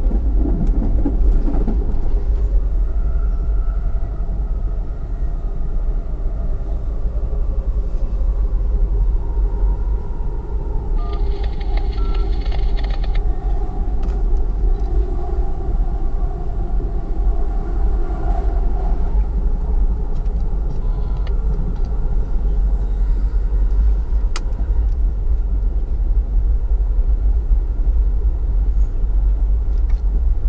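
Amtrak Empire Builder passenger train running at speed, heard from inside the coach: a steady, deep rumble of the car on the rails. A brief higher-pitched sound is heard about eleven seconds in, and a sharp click near the end.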